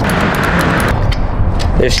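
Wind buffeting the microphone outdoors: a loud, uneven rumble with hiss. A man's voice starts near the end.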